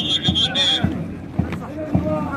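Troops marching in step, their boots striking the ground together at about two beats a second, with men's voices shouting over the beat. A shrill high tone sounds through the first part.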